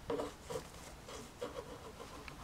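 Faint rubbing and soft handling knocks of a Microsoft Arc Touch Mouse being slid across a new surface, a few light touches spread through the moment.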